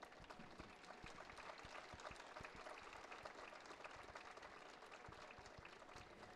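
Faint, scattered applause from a small arena crowd at the end of a figure skating program.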